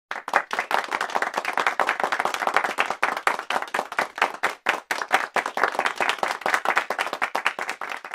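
Applause: rapid, dense hand clapping that starts suddenly and runs on without a break.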